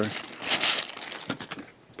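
Toy packaging crinkling and rustling as it is handled and cleared away. A run of sharp little clicks and taps follows about a second in.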